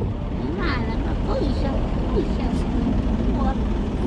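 A vehicle engine running steadily at idle, a continuous low rumble, with faint murmured voices over it.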